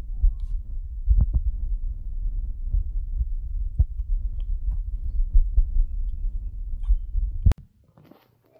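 A mastiff puppy chewing and gnawing on the hard plastic handle of a ball right at the microphone: heavy low thuds and rumble with sharp clicks of teeth on plastic. The sound cuts off abruptly near the end.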